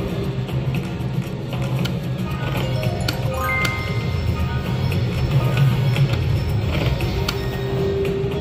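Wolf Run Eclipse slot machine playing its game music and electronic chime notes as the reels spin and stop, with a short run of rising chimes about three and a half seconds in, over a steady low background hum.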